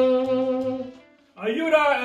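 Tenor saxophone holding one long, steady note that fades away about a second in. A man's voice starts up near the end.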